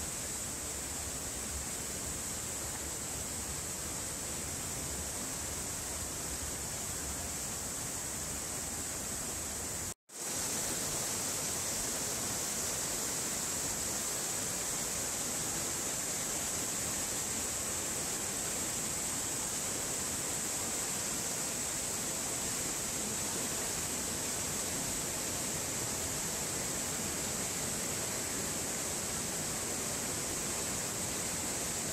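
Mountain creek rushing through a narrow rock gorge and over rapids, a steady rush of whitewater. It is broken by a split-second gap of silence about a third of the way through.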